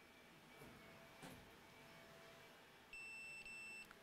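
Key fob tester's buzzer giving a steady high beep of about a second near the end, briefly broken in the middle, after a faint click. The beep signals that the tester is picking up the repaired key fob's transmission.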